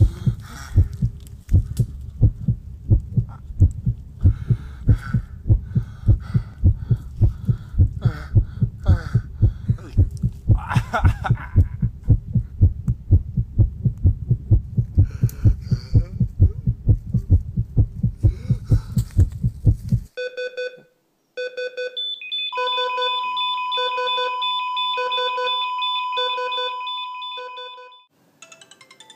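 Heartbeat sound effect, fast deep thuds with strained breathing over them, that stops suddenly about twenty seconds in. After a short gap, evenly spaced electronic beeps start, joined by a long steady tone.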